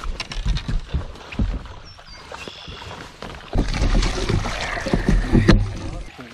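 Knocks and clatter on a fiberglass bass boat's deck as a landing net is picked up and handled, then about two seconds of louder rumbling noise that stops suddenly.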